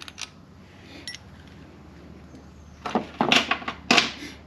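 Small metal motorcycle parts clinking and rattling in a quick cluster of sharp clicks about three seconds in, as a part is worked loose and pulled away from around the front sprocket and chain; quiet handling noise before it.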